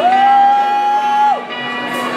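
A rock band playing live, with a long high whoop held for over a second over the music and crowd: it swoops up at the start and drops off about a second and a half in.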